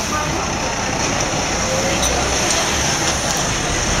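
Steady city street traffic noise, an even din with no single vehicle standing out.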